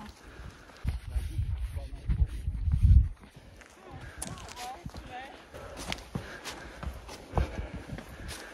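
Wind buffeting the microphone in gusts for about two seconds, then hikers' footsteps on the trail with faint, indistinct voices behind.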